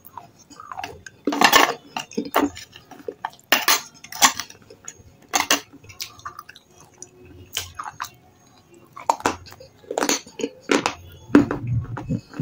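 Close-up crunching and chewing of brittle red shale clay chips coated in wet paste: a string of sharp, irregular crunches with short pauses between bites.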